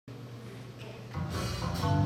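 A jazz band beginning to play: a quiet, low held note at first, then fuller band sound entering about a second in and growing louder.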